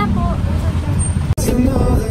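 Steady low rumble of an open-sided passenger vehicle in motion, with voices talking over it. The sound drops out for an instant a little past the middle.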